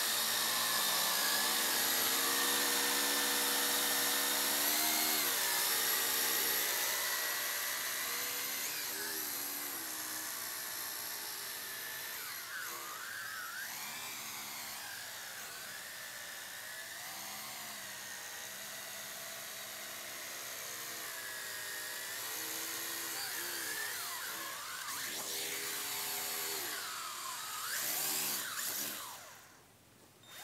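Small quadcopter drone's electric motors and propellers whining in flight, the pitch rising and falling constantly as the throttle is worked to keep the drone under control. The whine drops away sharply just before the end.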